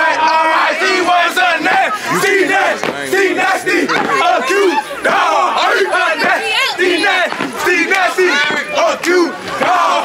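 A crowd hollering and shouting together, many loud voices overlapping and rising and falling in pitch.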